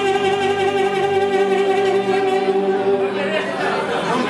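Saxophone holding one long, steady note over electronic keyboard accompaniment in a Romanian folk-style wedding-band instrumental. A busier swell of sound comes in near the end, leading into the next phrase.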